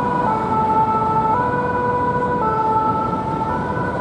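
A Paris fire brigade fire engine's French two-tone siren ("pin-pon") sounds, alternating between a high and a low note about once a second, over traffic rumble. It cuts off abruptly at the end.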